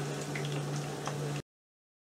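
Meat juices sizzling in a pan as a metal spatula prods and turns the meatballs, with a couple of faint ticks over a steady low hum. The sound cuts off abruptly to dead silence about one and a half seconds in.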